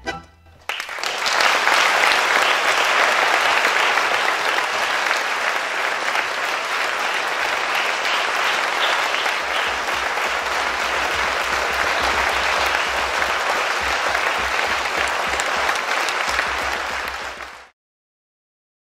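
The last note of a tango orchestra with bandoneons and violins dies away, and under a second later a large audience bursts into steady applause. The applause cuts off suddenly near the end.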